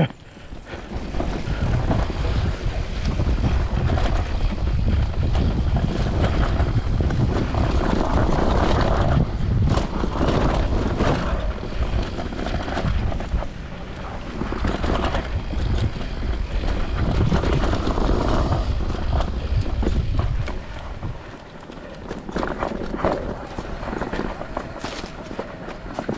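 Mountain bike descending a dirt forest trail: wind rushing over the camera microphone and tyres rumbling over the ground, with frequent knocks and rattles from bumps. It quietens for a couple of seconds near the end.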